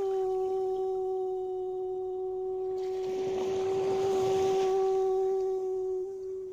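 A voice toning one long, steady sustained note that holds at a single pitch throughout, with soft waves washing underneath.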